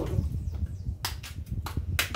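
Handling noise at a stainless steel kitchen sink while a peeled yam is handled: a low rumble, then a few sharp knocks from about halfway through.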